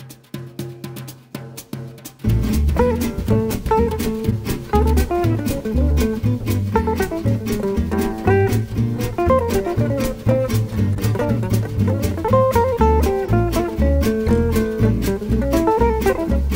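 Small jazz group playing swing: drums and double bass alone at first, then about two seconds in the full band comes in much louder, with jazz guitar lines over walking double bass and drums.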